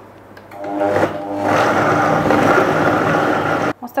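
Countertop blender motor spinning up about half a second in and running at full speed on a jar of frozen raspberries, aronia, banana and almond milk, then cutting off suddenly just before the end.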